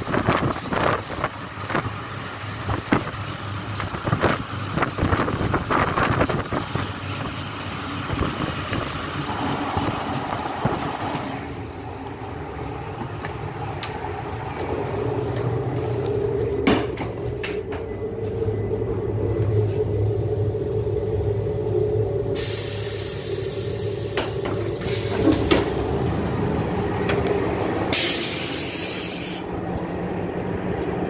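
ÖBB class 5047 diesel railcar running into a station: wheels clattering over rail joints and points for the first ten seconds or so, then standing with its diesel engine idling steadily. Loud hisses of compressed air come in the second half, a long one and then a short one near the end.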